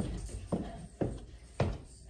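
Footsteps of a person in sneakers walking down a wooden staircase: three footfalls about half a second apart.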